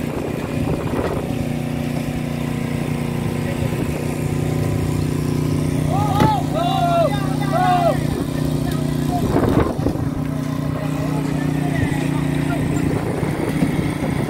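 A fishing boat's engine running steadily with a low, even hum, and crew voices calling out over it, loudest as a few drawn-out shouts about six to eight seconds in.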